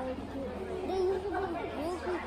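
Background chatter: other people's voices talking at a distance from the microphone, over a steady low hum.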